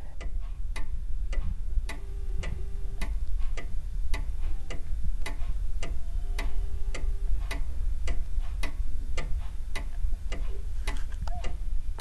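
Mechanical clock ticking steadily, about two ticks a second. Twice a faint steady tone of about a second sounds from the telephone handset: the ringback tone of a call ringing and not yet answered.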